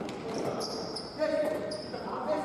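Indoor football players' shoes squeaking on a sports-hall floor during play, with a shout about a second in, all echoing in a large hall.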